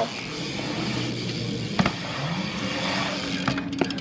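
BMX bike tyres rolling on skatepark concrete, a steady rumble with a faint rising hum, and a single sharp knock a little under two seconds in.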